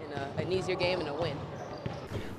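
A basketball bouncing on a wooden court, short knocks at an uneven pace, with indistinct voices in the background.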